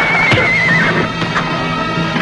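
A horse whinnies once, a wavering call that sags slightly in pitch over about a second, over background music.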